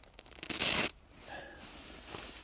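A short rustle of a hand rubbing over the backpack's fabric and sewn-on patch, loudest about half a second in, followed by fainter rubbing.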